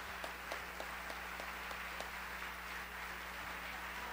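Theatre audience applauding, many hands clapping at once, over a steady low electrical hum.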